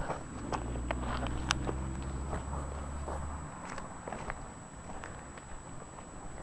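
Footsteps on dry grass and brittle stalks, with scattered crackles and snaps, over a low rumble that stops about three and a half seconds in.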